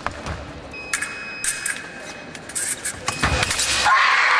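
A fencing exchange: quick, sharp clicks of blades striking and shoes slapping the piste, growing denser toward the end. Near the end a fencer yells out as a touch is scored.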